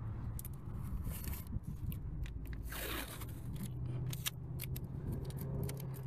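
Blue painter's masking tape being pulled from the roll and pressed along the edge of a steel wheel where it meets the tire, with scattered crackles and scrapes over a low steady hum.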